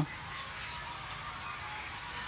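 Faint steady background noise during a pause in a man's speech, with no distinct event.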